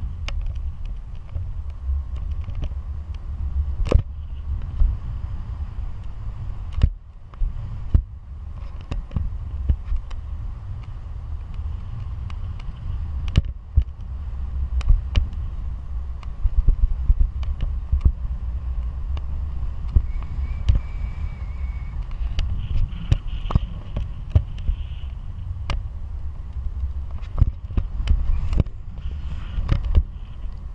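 Wind rushing over a pole-mounted camera's microphone in tandem paraglider flight: a loud, steady low rumble broken by frequent sharp crackles as the airflow buffets the mic.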